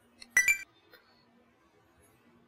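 A short chime about a third of a second in: the page-turn cue that marks a change to the next slide.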